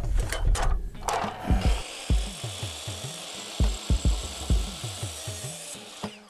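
DeWalt miter saw cutting a stair-tread cover's nose piece to length. After a few clicks of the piece being set against the fence, the steady hiss of the blade in the cut starts about a second and a half in and stops just before the end. Background music with a low bass line plays under it.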